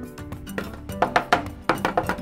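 White plastic pump bottle dropped onto a table, landing with a series of sharp knocks as it bounces and clatters without breaking. Background music plays throughout.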